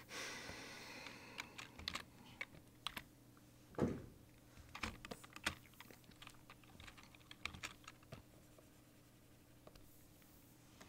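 Computer keyboard keys clicking in short irregular runs of taps, with one heavier knock just under four seconds in, over a faint steady hum.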